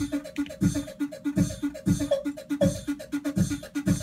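Looping drum pattern played by ER-301 sample players from recorded sounds that include a beatboxed mouth hi-hat, run through a pitch-shifting delay and a quantizer that adds bit-crusher-like grit. Low thumps land about every three-quarters of a second, with short pitched blips and quick ticks between them.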